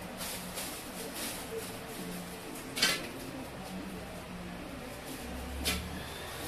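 Steady room noise broken by two sharp knocks, the louder one about three seconds in and a second near the end.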